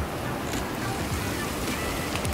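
Steady, even outdoor street noise, with background music underneath.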